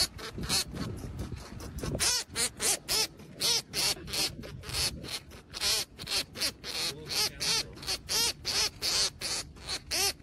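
A baby rabbit squealing in rapid short cries, about four a second, distressed at being held in a hand.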